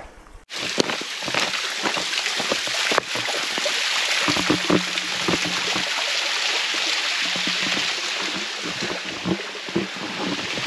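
Small waterfall pouring down a rock face into a pool: a steady hiss and splash of falling water that starts abruptly about half a second in.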